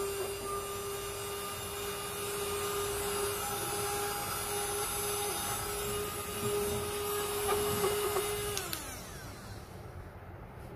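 Rechargeable handheld mini vacuum cleaner with a crevice nozzle running with a steady motor whine while sucking debris off a hard floor. Near the end it is switched off and the whine falls in pitch as the motor spins down.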